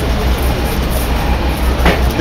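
Loud, steady rumbling noise from a passing vehicle, with a sharp click near the end.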